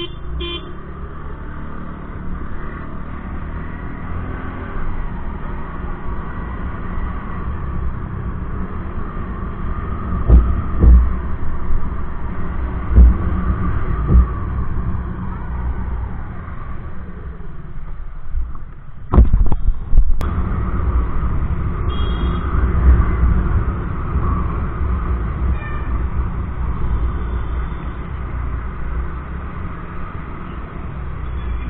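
Motorcycle engine running steadily while riding through traffic, heard from a camera on the bike, with loud buffets of wind on the microphone midway through. Brief horn toots from traffic sound a few times.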